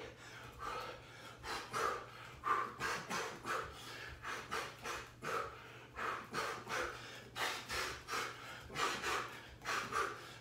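A man breathing hard while shadowboxing, with short sharp exhales in quick succession, about two to three a second, that go with his punches.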